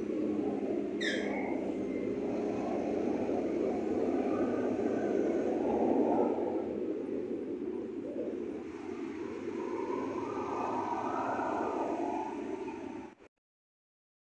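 Steady city traffic noise with slow swells as vehicles pass, and a brief high falling squeal about a second in. The sound cuts off abruptly near the end.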